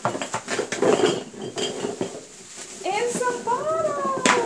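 Hands rummaging in a cardboard box of plastic baby bottles, with a quick run of clicks and clinks as bottles knock against each other and the box. A voice comes in near the end.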